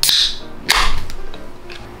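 Two beer cans cracked open one after the other: each a sharp pop of the pull tab followed by a short fizzing hiss, the second under a second after the first and a little louder.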